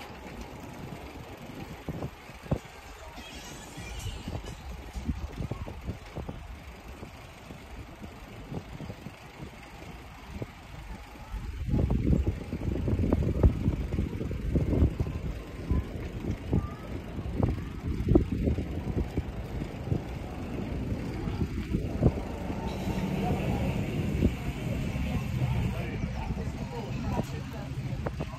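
Wind buffeting the microphone of a camera on a moving bicycle, with rumbling road and tyre noise and small knocks from the ride; it gets clearly louder about halfway through.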